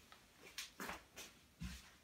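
Near silence: quiet room tone with a few faint, very short sounds spread through the two seconds.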